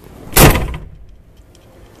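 A single loud thump inside a car's cabin about half a second in, fading within half a second.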